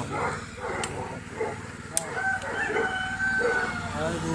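A rooster crowing once, starting about two seconds in and ending in one long held note, over a low steady hum.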